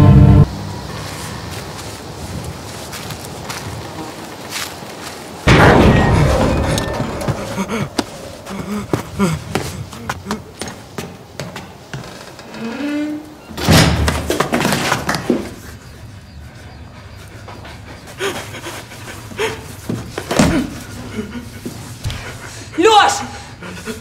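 Music cuts off, then heavy thuds and metallic clanks as a rusty steel bunker door is worked open. Short breaths and grunts come in between.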